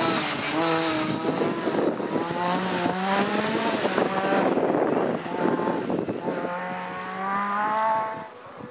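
Rally car engines revving hard on a gravel stage, climbing in pitch through repeated gear changes with a drop between each. Loose gravel and tyre noise runs underneath.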